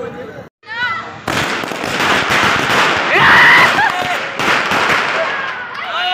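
A string of firecrackers going off in rapid crackling pops, starting about a second in and lasting about four and a half seconds.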